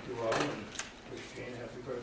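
Indistinct voices talking in a meeting room, with a short click or knock about a second in.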